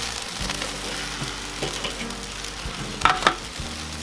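Chicken wings sizzling on the grate of a charcoal kettle grill, with the lid off and fat dripping into live flames, a steady sizzle. A couple of sharp clicks stand out about three seconds in.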